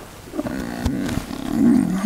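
Large paper sheets being handled, with a few light knocks, under a low rough murmur that swells near the end.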